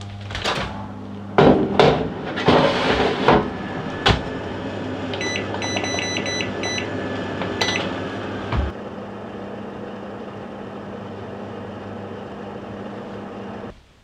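Countertop oven being loaded and started: knocks and clatter as the tart rings go in and the door shuts, then a quick run of about eight short beeps from the control panel as the 15-minute bake is set. The oven's steady hum runs under it all and cuts off near the end.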